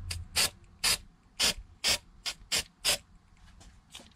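Aerosol can of dye-penetrant developer spraying in about seven short bursts of hiss, each a fraction of a second, laying a light white coat on an aluminium cylinder head: the last step of a crack check.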